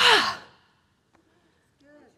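A woman's big, breathy sigh of relief, falling in pitch and lasting about half a second.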